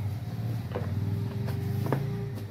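A cardboard parcel being handled and opened, with two sharp clicks about a second apart over a steady low rumble.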